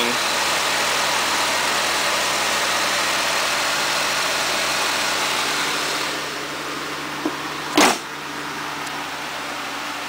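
Ford Ranger's 2.3-litre Duratec four-cylinder engine idling steadily and smoothly, like a sewing machine. It gets quieter about six seconds in, and a single short thump comes about eight seconds in.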